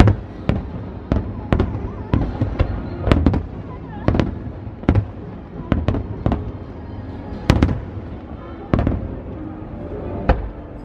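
Aerial fireworks shells bursting in a rapid, irregular series of sharp bangs, roughly one or two a second, with one of the loudest about three-quarters of the way through.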